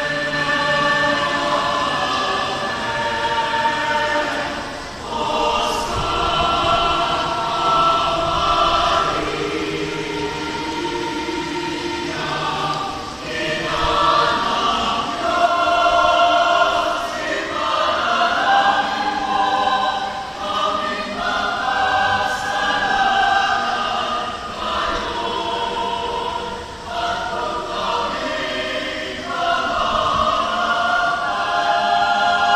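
Mixed SATB choir singing a sacred chorale, many voices holding sustained chords in parts, with brief pauses between phrases about five, thirteen and twenty-seven seconds in.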